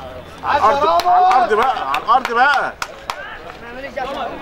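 Loud shouting voices of players or people at the pitch side during football play: several raised calls, mostly in the first three seconds. A few sharp knocks are heard among them.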